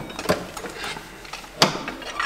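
Hand tools working on bolts under a car while unbolting the gearbox: scattered metallic clicks and clinks, with one sharper knock about one and a half seconds in.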